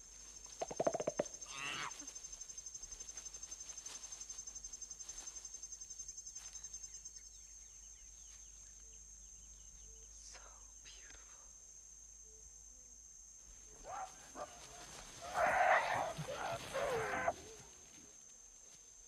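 Jungle ambience: a steady high insect chirring that pulses for several seconds early on. A short low grunting call about a second in, and a louder, breathy voice near the end.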